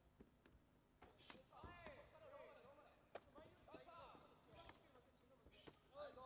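Faint shouted voices around the mat, with a series of sharp thuds of punches and kicks landing in a full-contact karate exchange, the loudest about three seconds in.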